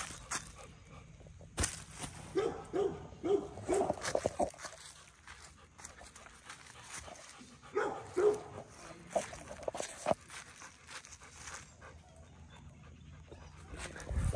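Rottweiler whining in short, quick pitched calls that come in two runs, the first about two to four seconds in and the second around eight seconds in. There is a single sharp click about a second and a half in.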